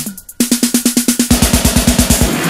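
Electro hip-hop club track with a drum machine break. The beat dips briefly just after the start, then comes back as a fast roll of about ten drum hits a second. A hiss of noise swells up under the roll in the second half.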